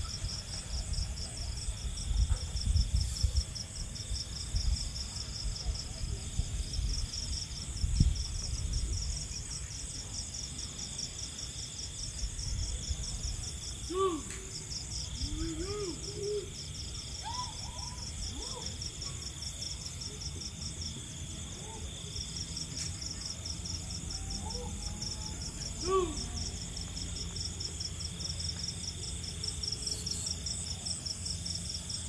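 Steady, fast, high-pitched chirring of night insects. A low rumble fills the first several seconds, with a thump about eight seconds in. A few short low calls that rise and fall come about halfway through and once more later.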